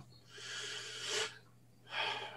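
A person's breath, a soft rush of air lasting about a second, followed by a short silence.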